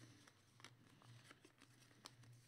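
Near silence, with a few faint light ticks of trading cards being slid and sorted by hand.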